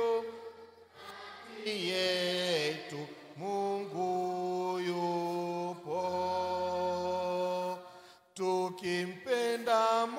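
A man singing an old Swahili Eucharistic hymn solo into a microphone, in slow phrases of long held notes. There is a short pause about a second in and another just after eight seconds.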